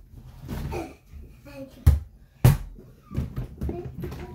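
A toy basketball bouncing hard twice, two sharp thuds a little over half a second apart.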